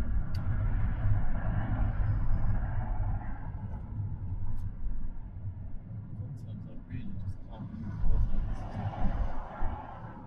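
Steady low road and engine rumble inside a moving car's cabin as it cruises in traffic.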